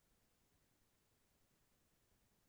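Near silence: faint steady hiss of an almost silent recording.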